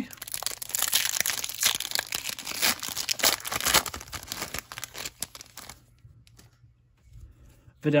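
Foil wrapper of a Topps Opening Day baseball card pack being torn open and crinkled by hand. It makes a dense run of crackling that stops about six seconds in.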